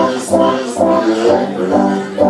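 Live blues-rock trio playing an instrumental break: electric guitar notes over bass and drums, with a steady beat.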